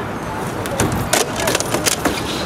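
A folding table with a wooden top and metal legs being collapsed and tipped onto its side: a quick series of sharp knocks and clatters in the second half.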